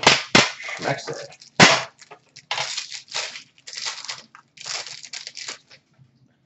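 Trading card packaging being opened and handled: a few sharp knocks in the first two seconds, then repeated bursts of plastic crinkling and rustling.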